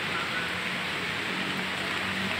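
Steady outdoor background noise, an even hiss with a faint low hum under it.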